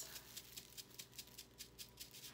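Faint, quick ticking and rattling of a handheld mesh sieve being shaken as a flour, sugar and salt mix is sifted through it onto parchment paper.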